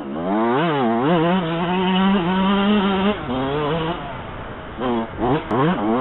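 Yamaha YZ125 single-cylinder two-stroke motocross engine being ridden hard, its pitch rising and dipping with throttle and gear changes. It holds a high rev for a couple of seconds, drops back about three seconds in, eases off, then climbs again near the end.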